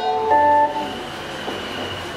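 Closing notes of live electronic music: a held chord of several tones that cuts off within the first second, leaving a thin steady high tone over a low hum.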